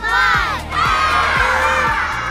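Children shouting the last call of a countdown, then cheering, over backing music with a steady beat.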